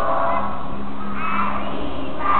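A large group of children singing a lantern song together, with a crowd murmur and a steady low hum underneath.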